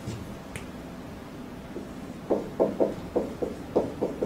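A run of light, irregular knocks or taps, roughly three a second, starting about halfway through, over quiet room tone.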